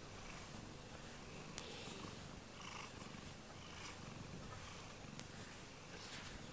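A cat purring softly while being stroked, with a faint click about a second and a half in.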